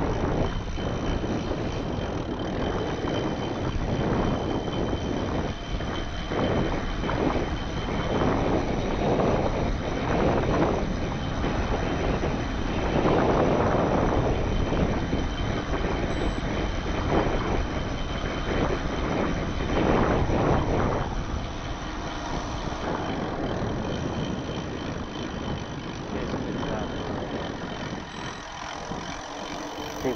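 Wind rushing over an action camera's microphone as a mountain bike rolls down a paved road, a steady noisy rush that swells and eases with speed and is loudest around the middle.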